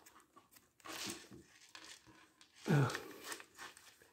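Soft handling noise from small plastic action-figure parts worked between the fingers, with a short rustling burst about a second in. A brief spoken "uh" comes near the end.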